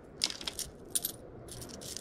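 Loose coins and a few paper clips clinking together in a hand as the coins are picked through and counted, a handful of light, separate metallic clinks.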